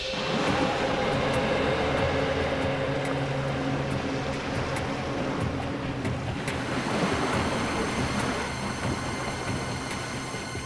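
A whoosh that swells in at the start, then a steady, dense rushing and rumbling noise with a few held low tones under it and faint ticks on top.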